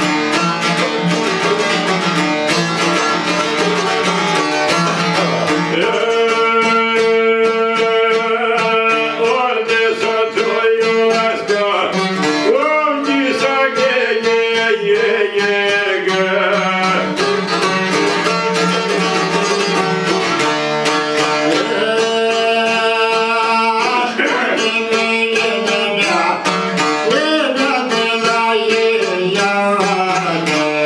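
Albanian folk music on two plucked long-necked lutes of the çifteli family, played together in a fast, busy tune. A man sings a wavering, ornamented line over them from about six seconds in.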